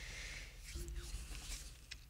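Faint soft breathing and small mouth clicks close to a microphone, over a low steady hum.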